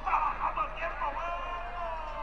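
A raised voice shouting, the second half one long drawn-out call that falls in pitch.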